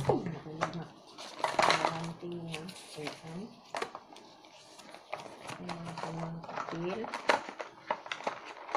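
Paper leaflets and packaging being handled: rustling and sharp little clicks. A voice talks quietly underneath.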